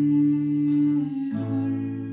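A man singing a slow, sentimental song, holding a long sustained note over a softly ringing classical acoustic guitar played with a capo. The pitch shifts to a new note just past halfway.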